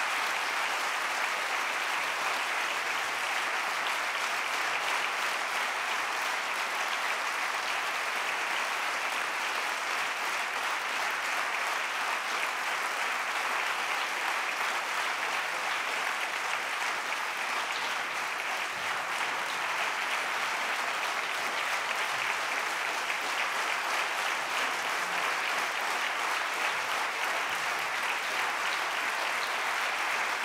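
Large audience applauding in a hall, one long, steady spell of clapping that does not let up.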